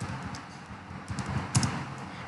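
Computer keyboard keys tapped several times in quick succession while a command is typed, with one louder keystroke about one and a half seconds in.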